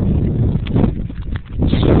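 Gusty wind buffeting the microphone: a loud, uneven rumble that rises and falls.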